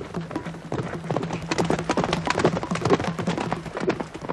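Horse hooves galloping: a quick, steady run of hoofbeats.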